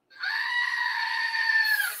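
A screaming-goat novelty toy playing its recorded goat scream: one long, steady scream lasting a little under two seconds.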